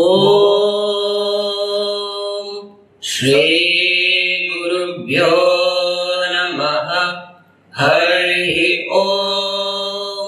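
A male voice chanting a Vedic invocation in Sanskrit: long, steadily held phrases, three in all, each broken by a short pause for breath.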